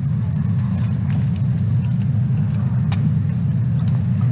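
Steady low rumble of outdoor stadium background, with a couple of faint clicks.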